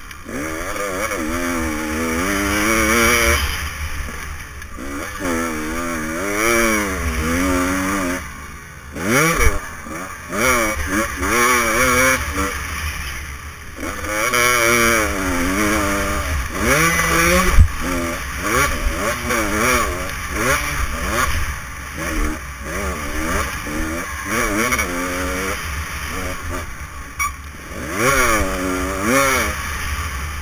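Motocross dirt bike engine revving up and down over and over as it is ridden hard around a dirt track, its pitch rising and dropping every second or two, heard close from the rider's helmet camera with wind noise. Two sharp knocks stand out, about nine and a half and seventeen and a half seconds in.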